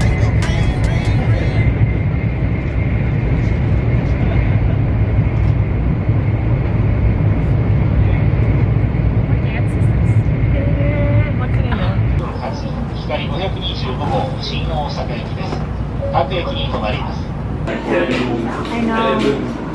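Steady low rumble of a high-speed train heard from inside the passenger cabin, with people's voices over it. The rumble eases about twelve seconds in and the voices come through more clearly.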